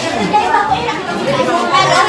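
Several people talking over one another: overlapping conversation and chatter in a room.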